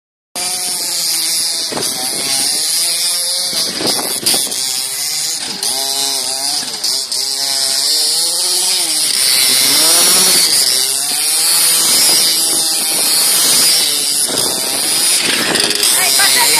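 Petrol RC buggy's small two-stroke engine revving up and down again and again as the car drives, its pitch rising and falling in repeated sweeps.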